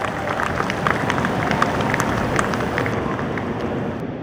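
Audience applauding: many hands clapping in a steady, dense round that starts all at once and eases slightly near the end.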